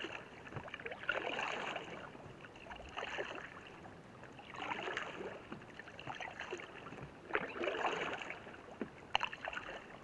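Paddle strokes from a Gumotex Baraka inflatable canoe: a splashing swish of water roughly every two seconds, with small knocks and drips between strokes.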